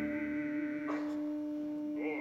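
One long musical note held steady at a single pitch, without vibrato, between sung phrases of an opera drinking song.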